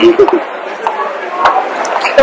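A woman laughing, with a few sharp clicks or knocks, the clearest about one and a half seconds in.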